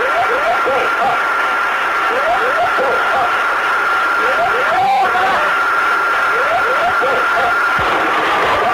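Cockpit voice recording from a Boeing 747SR: the ground proximity warning system's repeating "whoop whoop, pull up" alarm, in groups of two or three rising swept tones about every two seconds, over a steady high tone and cockpit noise. It warns that the jet is descending into terrain just before the first impact.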